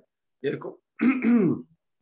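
Halting speech from a man on a video call: two short spoken fragments, the second ending in a falling, drawn-out syllable. Between the words there are gaps of dead silence.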